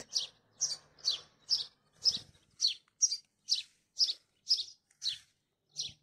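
A small songbird repeating one short, high chirp over and over, evenly spaced at two to three calls a second.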